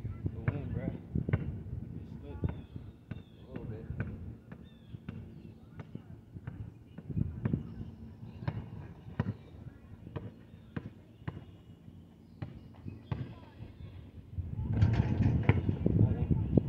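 A basketball bouncing on an asphalt court, a sharp thud every half second to a second at uneven spacing.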